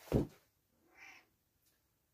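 A short low thump just after the start, then about a second in a faint, brief mew from a cat.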